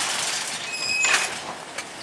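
Steady parking-lot vehicle noise, fading slightly, with a brief high-pitched squeal a little under a second in.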